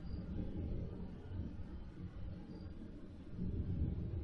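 A low rumble that comes in suddenly at the start and swells near the end.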